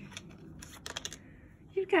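Light, quick plastic clicks and rattles as a cat paws treats around a plastic puzzle feeder, bunched together about half a second to a second in.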